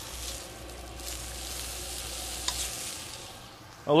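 Steady sizzling of food frying in a hot pan, with a light clink about two and a half seconds in.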